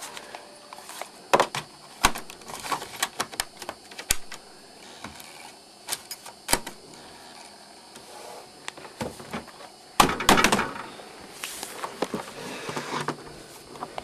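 Scattered plastic clicks and knocks from an IBM laptop and its removable bay drive being handled, with a louder cluster of knocks about ten seconds in.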